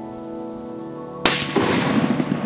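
A single rifle shot about a second and a quarter in, a sharp crack followed by a long echo that slowly dies away, over steady background music.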